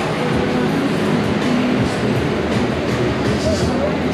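Large portable evaporative cooler fan running with a loud, steady rushing noise, with crowd chatter behind it.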